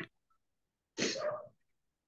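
A person sneezing once, a single short burst about a second in.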